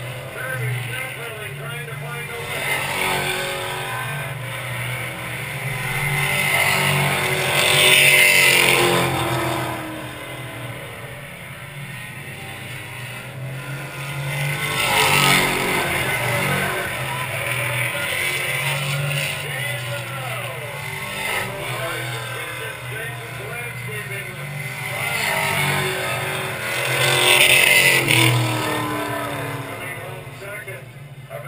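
Stock cars racing around a short oval, engines droning continuously. The sound swells to loud passes about 8, 15 and 27 seconds in as cars come down the front stretch, with the engine note falling as each one goes by.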